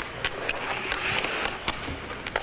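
Ice hockey skates scraping and carving on rink ice, with a few sharp clacks of sticks and puck.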